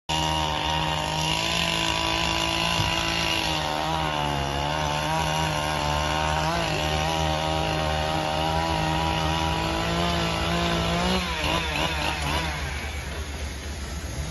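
Rhino portable band sawmill running under load as it cuts a log, a steady loud engine note with a saw-like edge that wavers a little in pitch. About eleven seconds in the pitch wobbles and drops, and the sound gets quieter.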